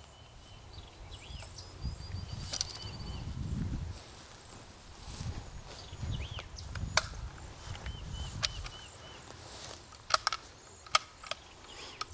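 Footsteps and camera handling in grass, heard as uneven low rumbling thuds, with several sharp clicks or snaps, most of them near the end, and faint short bird chirps in the background.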